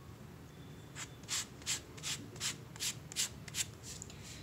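A small piece of cardboard scraped and dabbed over wet paint on paper: a run of about nine short scratchy strokes, two or three a second, starting about a second in.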